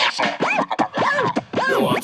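DJ turntable scratching in a hip-hop track: quick back-and-forth pitch sweeps, several a second, with little deep bass under them.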